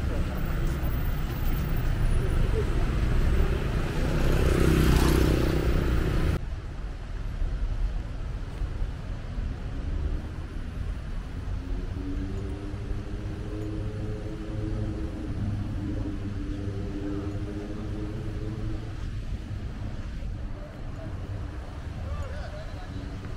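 Road traffic running past, loudest as a vehicle goes by about five seconds in. About six seconds in the sound cuts off abruptly to a quieter background with faint distant voices.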